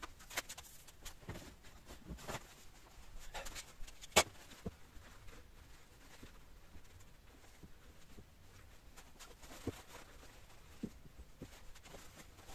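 Faint, scattered small clicks and scrapes of hands working at a silicone mould, picking away soft silicone, with one sharper click about four seconds in.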